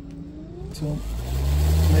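Mitsubishi Electric Mr. Slim inverter indoor unit's fan motor starting up: a faint rising whine, then from a little under a second in a rush of air with a low steady hum that swells to full loudness over the next second.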